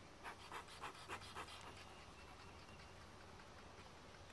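Faint scrapes of a metal hive tool working at the wooden top bars of a top bar hive: about five short strokes in the first second and a half, then near silence.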